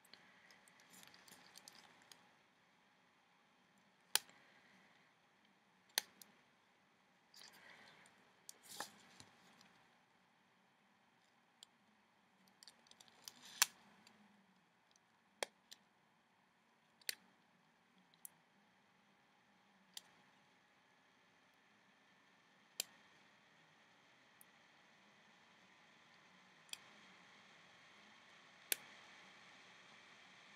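Rubber-band figure being worked with a loom hook: about a dozen sharp clicks, one every second or few, with faint rustling of the elastic bands in between, over near-quiet room tone.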